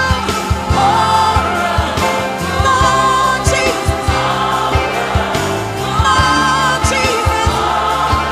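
Recorded gospel song: singing voices with choir backing over a band with bass and a steady drum beat.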